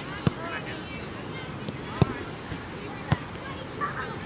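Three sharp thuds of a soccer ball being struck during shooting practice: one just after the start, the loudest about two seconds in, and another just past three seconds. Faint voices can be heard in the background.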